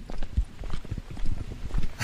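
A quick, irregular run of light knocks or taps, several a second, with no voice over them.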